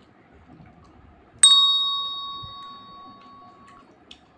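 A single bright bell ding, struck once about a second and a half in and ringing out for over two seconds: the notification-bell sound effect of a subscribe animation.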